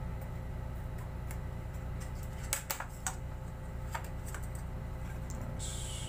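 Brass letter stencil plates clicking and clinking as they are picked up and set down on a table: a cluster of sharp clicks about two and a half seconds in, and a couple more around four seconds. A short scratchy rustle comes near the end, over a steady low hum.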